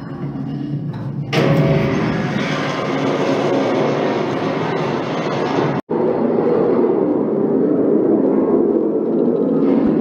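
Background music with a dense, noisy rumbling wash under it. It gets suddenly louder about a second in and cuts out for an instant about halfway through.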